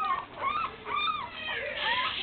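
A young Boston Terrier puppy whimpering: several short, high cries about half a second apart, each rising and falling in pitch, which the owner puts down to the puppy being a little bit hungry.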